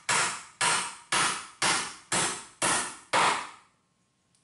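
Hammer driving galvanized, ridged box nails into a 2x4 of salvaged lumber, in steady blows about two a second. Seven strikes, each dying away quickly, then the hammering stops shortly before the end.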